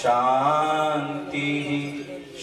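A voice chanting a devotional mantra in one long, held phrase, which drops away at the end for a breath before the next phrase.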